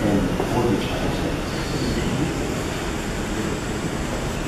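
Steady room hum from wall fans and air conditioning, with faint murmured voices and shuffling as people stand.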